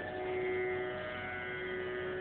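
A steady musical drone holding one pitch with many even overtones, heard through a gap in a man's talk.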